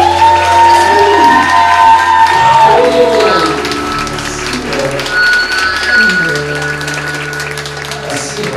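A live rock/jazz cover band rings out the close of a song: the singers hold long notes that bend in pitch over sustained instruments. The audience applause builds through the second half.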